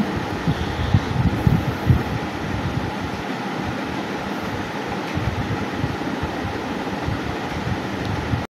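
Steady mechanical background noise of a workshop, like a fan or air-conditioning unit running, with irregular low thuds in the first few seconds.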